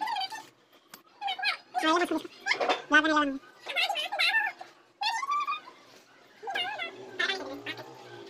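Voices talking in short stretches, quieter than the main narration, in a small room.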